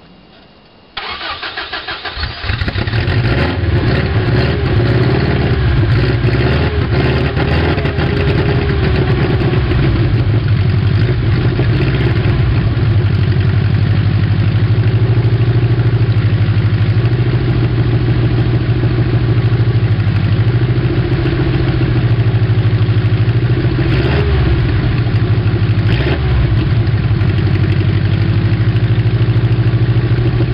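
A 1991 Subaru Loyale's flat-four engine cold-started after sitting a long while. About a second in the starter cranks briefly, and the engine catches within a couple of seconds. It then settles into a steady idle, with a few brief changes in revs.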